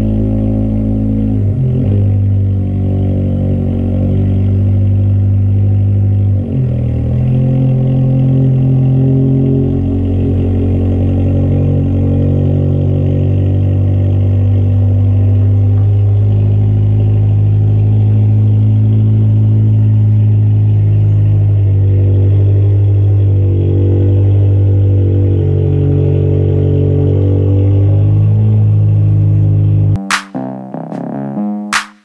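Car engine running steadily, its pitch dipping briefly about two seconds and six seconds in; the car's hydraulic lifters have been noisy since the engine overheated.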